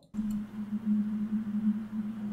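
A steady low drone note, a sustained eerie music tone, begins just after a brief silence and holds without change.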